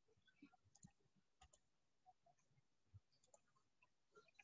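Near silence, broken by faint, irregularly spaced clicks, about a dozen of them.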